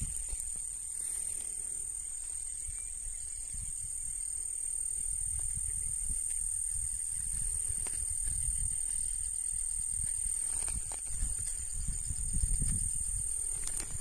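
Steady, high-pitched buzzing of insects that runs on unbroken, with a low rumble underneath and a few faint clicks.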